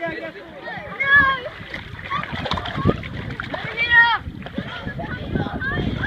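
Bottlenose dolphin splashing at the surface right beside a small inflatable boat, under children's excited chatter and exclamations.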